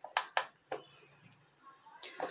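A finger pressing the buttons of a plastic digital kitchen scale: two sharp clicks a quarter second apart, then a softer tap.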